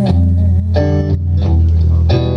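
Live electric guitar and drums playing between vocal lines: ringing guitar chords over low held notes, with sharp drum strikes, and a held sung note trailing off at the start.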